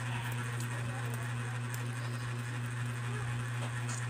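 A steady low hum under quiet eating sounds as noodles are eaten, with a few light clicks of a spoon on the plate.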